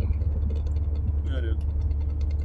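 Steady low engine and road drone inside the cabin of a car-based A-traktor driving along a road.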